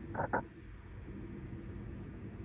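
Two short guttural croaks from a performer's voice in quick succession near the start, then only a low steady room hum.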